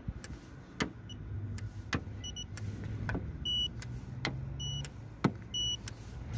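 Handheld paint thickness gauge beeping as its probe is pressed to the car's body panels, each beep marking a reading taken: about five short high beeps, the later ones a little longer, with a few sharp ticks and a low steady hum underneath.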